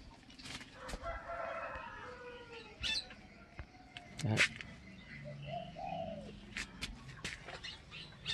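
A rooster crowing in the background: one long crow about a second in, lasting about a second and a half, with a shorter arched call a few seconds later. Scattered light clicks occur throughout.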